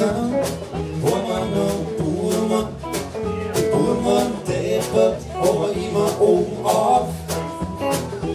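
Live band music: a man singing over a hollow-body electric guitar and bass, with a steady beat.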